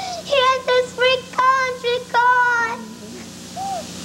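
A young girl crying as she prays aloud, her voice high and wavering in a run of short sobbing cries, the longest held about two seconds in, dropping quieter near the end.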